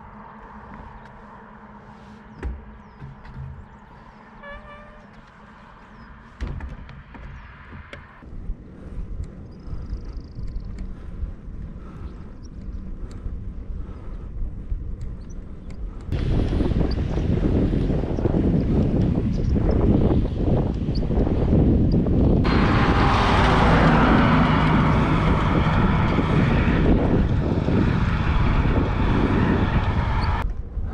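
Wind rushing over the microphone of a camera riding on a moving bicycle, loud and steady from about halfway in, with a brighter hiss added a few seconds later. Before that, quiet outdoor ambience with a few faint clicks and a low hum.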